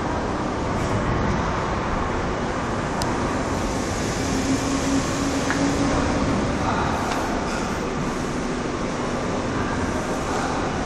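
Steady background rumble and hiss picked up by a low-quality phone microphone, with a faint hum in the middle and no clear single event.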